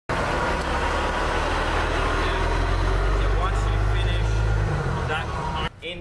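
A large engine running steadily with a deep rumble, faint voices mixed in. It eases off a little before 5 s and cuts off abruptly just before the end.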